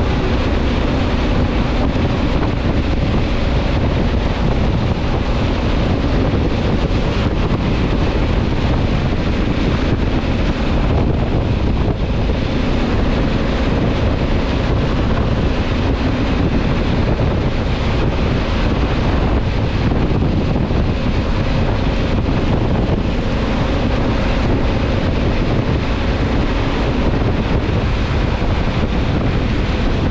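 Steady rush of wind over the microphone of a motorcycle ridden at about 60 mph, with the bike's engine droning underneath at an even pitch.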